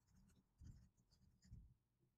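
Near silence with faint computer-keyboard typing: a few soft key taps about half a second apart.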